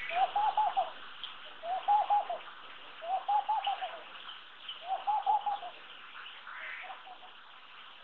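Laughing dove giving its bubbling, laughing coo: four short phrases of quick rising-and-falling notes, about one and a half seconds apart, then a fainter fifth phrase about seven seconds in.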